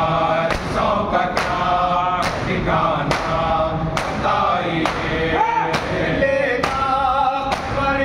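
Group of men chanting a mourning lament (noha) in unison behind a lead reciter on a microphone, with rhythmic chest-beating (matam): a sharp hand strike a little more than once a second, keeping time with the chant.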